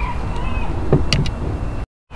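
Steady low rumble of outdoor background noise, with a few faint clicks about a second in. The sound drops out briefly near the end.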